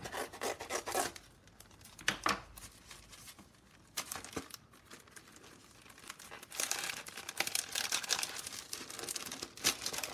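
Cellophane wrapping on a new stencil crinkling and tearing as it is cut open and pulled off. The rustles come in irregular bursts, with sharp crackles near the start and a denser stretch of crinkling through the last few seconds.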